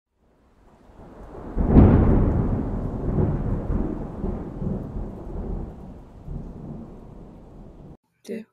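A thunderclap: a low rumble swells in, a sharp crack comes just under two seconds in, and a long rolling rumble then fades away.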